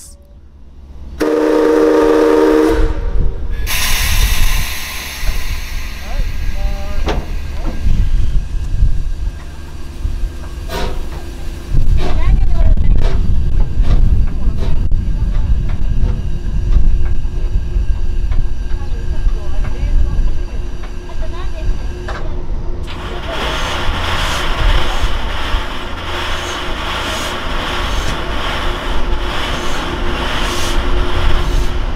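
Preserved 9600-class steam locomotive 49671, driven by compressed air rather than steam, gives one short whistle about a second in. Then it hisses air and rumbles as it starts to move in reverse, and the hissing grows louder again near the end.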